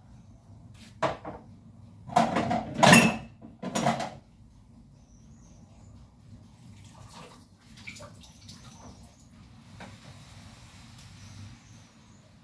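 Dishes being washed by hand at a sink: water and dishes clattering, loudest in a cluster about two to four seconds in, then softer scattered clinks of dishes.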